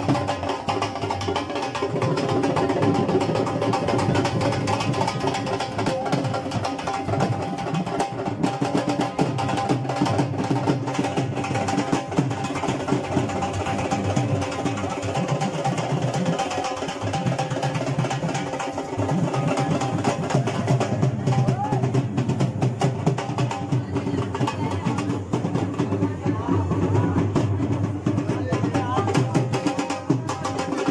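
Dhol drums beaten continuously in a dhamaal rhythm, with crowd voices mixed in.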